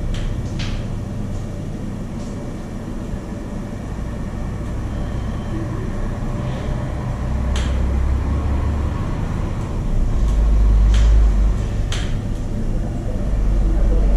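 A steady low rumble that swells twice, around eight and eleven seconds in, with a few faint sharp clicks.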